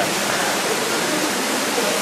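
Steady rush of running water inside a cave.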